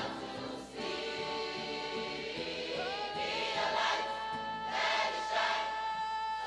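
Choir singing a hymn in long held notes, with one note sliding up about three seconds in.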